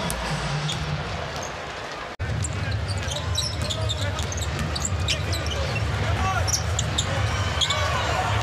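Live NBA game sound on a hardwood court: a basketball being dribbled and sneakers squeaking in short, sharp chirps over a steady arena crowd hum. The sound drops out briefly about two seconds in, then resumes.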